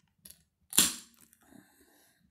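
An aluminium drink can opened by its pull-tab: one sharp crack just under a second in, followed by a short hiss of escaping gas that quickly fades.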